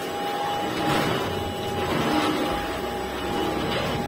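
Truvox Valet Battery Upright II cordless upright vacuum switched on and running, a test after fitting a new brush-roll drive belt. Its motor whine rises briefly at the start, then holds steady over the rush of air.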